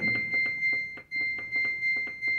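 Samsung top-load washing machine's control panel beeping, a high electronic tone pulsing about three times a second, as the cycle selector is pressed to step through wash programs.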